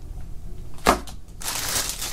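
A small plastic-bagged adapter dropped onto the cardboard bottom of a box: one sharp tap about a second in. Near the end, the plastic packaging of a cable crinkles.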